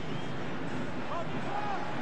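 Football stadium crowd noise from a TV match broadcast: a steady wash of crowd sound with a few faint voices rising out of it about a second in.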